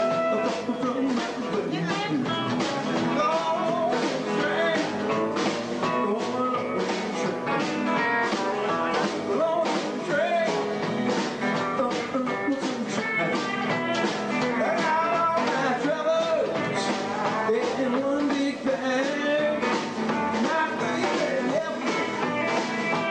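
A live country band playing an upbeat rockabilly song: a male lead singer over strummed acoustic guitar, electric guitar and bass, with drums keeping a steady driving beat.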